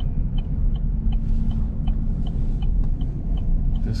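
A vehicle driving slowly on a snowy highway, heard from inside the cab: a steady low engine and road rumble, with a light, regular ticking about three times a second.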